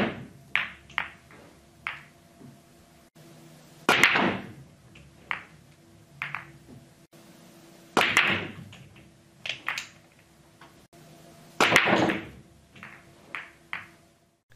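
Pool balls on a straight pool break, repeated four times about four seconds apart: each time a loud crack as the topspin cue ball drives into the racked balls, then a scatter of smaller clicks as the balls collide and strike the cushions.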